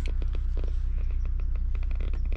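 A steady low rumble with a run of small clicks and taps as a party popper is handled, and it is not set off.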